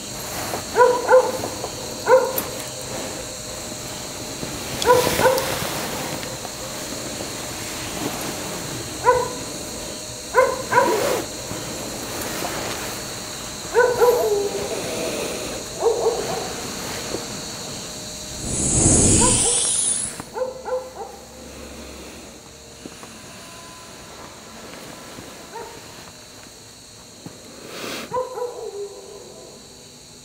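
A dog barking off and on, in short single and double barks every few seconds. About nineteen seconds in, a loud whoosh sweeps through and fades out; a faint steady high whine runs underneath.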